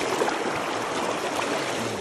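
Shallow river current rushing and splashing over stones close to the microphone: a steady, even rush of running water.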